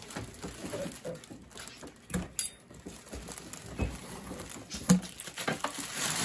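Thin plastic wrapping rustling and crinkling as it is handled and cut with scissors, with a few soft knocks in between.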